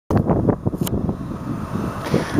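Wind buffeting the microphone outdoors: an uneven, gusty low rumble, with a single sharp click a little under a second in.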